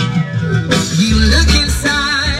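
Recorded music with a sung vocal played loud through a sound system, its deep bass line coming in strongly about a second in.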